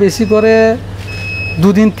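Mostly a man's speech, including a drawn-out vowel near the start, over a steady low hum; in a short pause about a second in, a brief thin high steady tone sounds.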